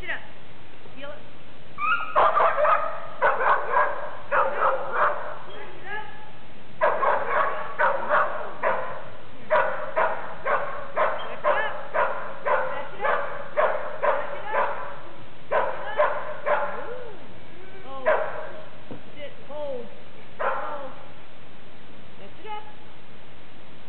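A dog barking and yipping in a long run of short calls, about two a second, turning near the end to a few scattered whines.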